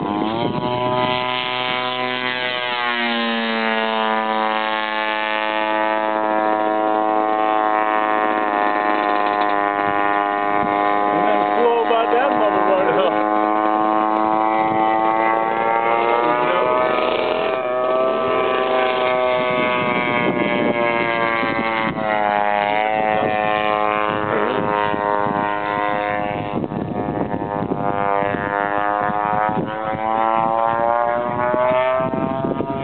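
Engine of a custom Stiletto RC airplane running at high revs, turning a 22x20 propeller. Its pitch climbs steeply in the first few seconds as it throttles up, then it holds a steady drone, dipping and recovering in pitch a couple of times in the second half.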